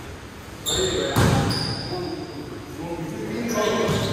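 A basketball strikes hard about a second in, with high sneaker squeaks on the court floor and players' voices.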